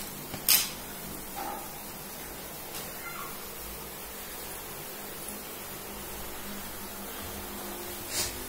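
A sharp tap about half a second in, then a couple of brief, faint vocal sounds from a toddler over a steady low hiss.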